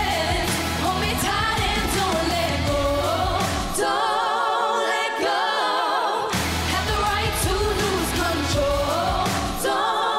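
Female pop group singing in harmony, holding long wavering notes, over a pop backing track. The bass and beat drop out for about two seconds, four seconds in, then return, and drop out again near the end.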